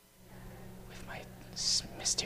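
Faint whispering close to a microphone, with a short sharp hiss of an s-sound about a second and a half in, over a low steady hum.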